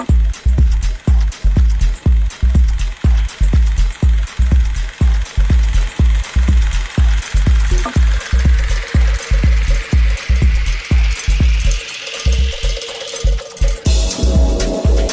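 Techno track with a steady, pounding four-on-the-floor kick drum. Over the second half a hissing noise riser sweeps upward in pitch, building tension. The kick drops out briefly just before the end.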